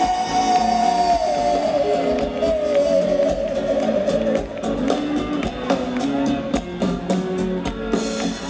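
Live band music with acoustic guitar and drums; a long held vocal note wavers and trails off about halfway through, after which the drum strikes and guitar chords carry on.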